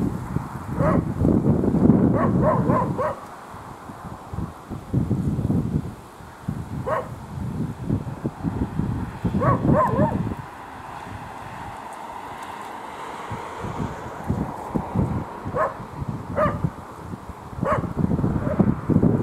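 A dog barking in short bursts: several barks in the first few seconds, one around seven seconds, a few around ten seconds and more near the end. Under the barks runs an uneven low rumble.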